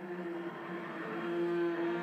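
Solo cello, bowed, swelling steadily louder on a sustained note, its tone grainy with bow noise.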